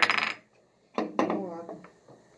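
Chess pieces clacking against each other and a wooden chessboard as a piece is moved: a sharp clatter at the start and another about a second in.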